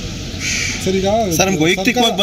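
A man's voice speaking, with a crow cawing over it.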